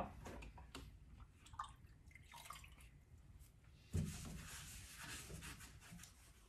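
Faint sounds of window paint being cleaned off glass with water: scattered small drips and clicks, then a steady wiping hiss from about four seconds in.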